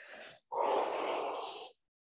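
A woman breathing audibly: a faint breath, then a louder, longer breath of about a second.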